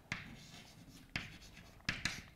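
Chalk writing on a blackboard: three sharp taps as the chalk strikes the board, with faint scratching strokes between them.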